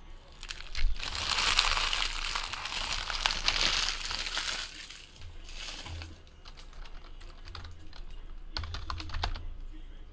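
An emptied trading-card pack wrapper being crumpled in the hand, a dense crinkling for the first four seconds or so, followed by lighter scattered clicks and a brief rustle near the end.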